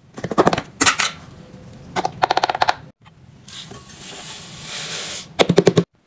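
Rapid bursts of plastic clicking and rattling from handling an OxiClean tub, a few seconds apart. In the middle comes a soft hiss of stain-remover powder pouring into a glass jar, and another quick burst of clicks comes near the end.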